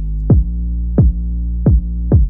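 A kick drum and a sustained, overdriven 808 bass play together from a DAW, with three punchy kick hits about two-thirds of a second apart. The 808 dips at each kick because it is sidechained to the kick through a glue compressor, which clears room for the kick.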